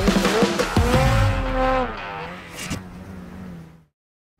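A motor engine revving, mixed with music as a short edited transition sting; the pitch glides up and down, and the sound thins out and fades away near the end.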